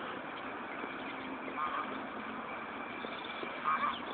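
Steady outdoor background noise with a faint low hum, and a short high-pitched chirp-like sound heard twice, about two seconds apart.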